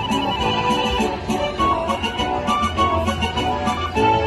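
Video slot machine playing its win celebration music while the win meter counts up, a bright electronic tune with short chiming hits repeating several times a second.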